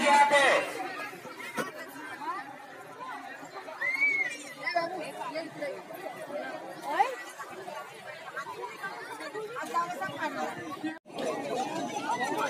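Crowd chatter: many voices talking over one another, with one nearer voice loud at the very start. The sound cuts out for an instant about eleven seconds in.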